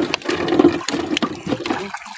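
Water sloshing and lapping close against the side of a wooden boat, with many sharp clicks and knocks. The sound breaks off briefly near the end.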